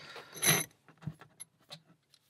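Brass padlock being handled and pulled out of a bench vise: a bright metallic clink about half a second in, followed by a few faint clicks.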